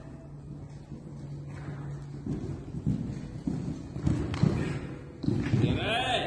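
Hoofbeats of a ridden horse cantering on soft arena footing: heavy low thuds in uneven groups, starting about two seconds in and growing louder toward the end.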